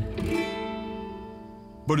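Background music: a plucked guitar chord is struck right at the start and left to ring, fading slowly.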